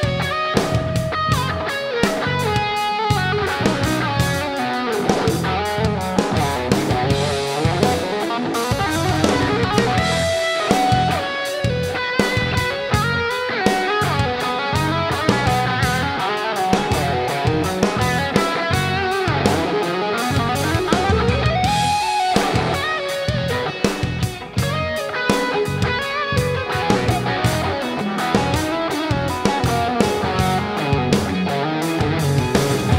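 A live rock band plays an instrumental passage. Electric guitars pick busy melodic note runs over a drum kit and bass, with sliding notes about two-thirds of the way through.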